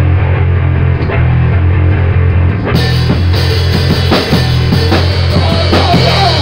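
Live rock band jam: an electric bass holds loud, low sustained notes over a drum kit. About halfway through, the drums get busier and cymbals come in.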